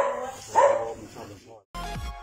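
A dog barking twice, two short barks about half a second apart, then electronic outro music starts near the end.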